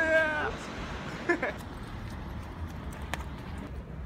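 A drawn-out, high-pitched vocal cry from a young man at the start, its pitch rising then holding, followed by a brief second vocal sound about a second later. Low street background rumble fills the rest, with a single click near the end.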